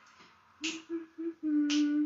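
A woman humming a tune while snapping her fingers in time. Two sharp snaps sit a little over a second apart, and the hum runs as three short notes and then one longer held note.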